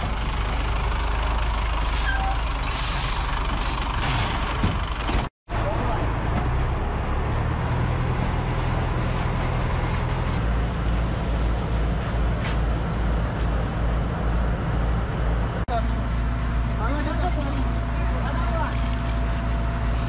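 Fire truck engine running steadily under a broad hissing rush, with a brief dropout about five seconds in. Men's voices call out near the end.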